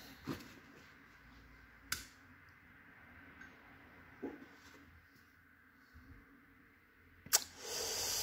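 Faint low hum from a fluorescent light fixture's ballast while the tube is lit, with a few faint clicks, the sharpest about two seconds in. A short burst of hissing noise comes near the end.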